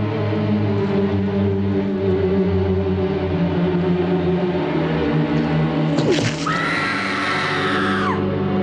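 Horror film score of sustained low tones, then a sharp strike about six seconds in as the stake is driven, followed by a woman's high, held scream.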